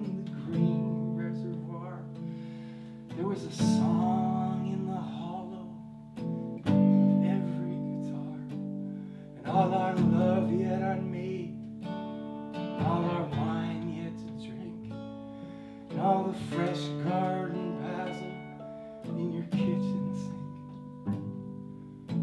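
Live acoustic folk band playing a slow song: acoustic guitars with chords struck about every three seconds and left to ring, under upright bass and piano, with a man singing in phrases.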